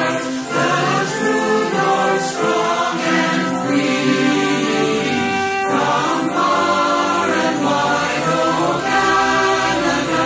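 Choral music: a choir singing sustained, slowly changing notes.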